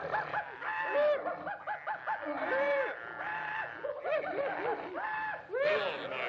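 Cartoon voices laughing and snickering in quick repeated bursts, several voices at different pitches overlapping.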